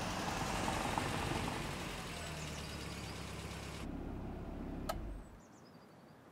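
Range Rover SUV driving along a street: a steady rush of engine and tyre noise. It drops away about five seconds in, with a single click just before, leaving only a quiet hush.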